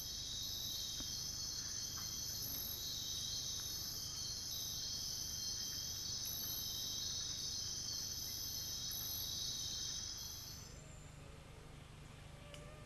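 Night insect chorus of cricket-like trilling: a steady high trill with a higher, pulsing chirp repeating over it, fading out about ten and a half seconds in.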